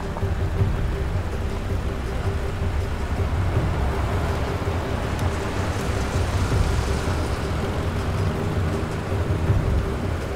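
Engines of a convoy of military jeeps and an army truck driving on a dirt road: a steady low rumble.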